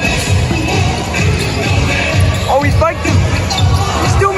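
A basketball being dribbled on a hardwood court during play, a run of low thuds about three a second, with arena music and voices around it.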